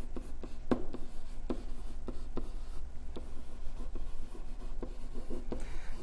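Stylus writing on a tablet screen: a string of short, irregular taps and scratches as the pen strokes out a handwritten word, over a faint low hum.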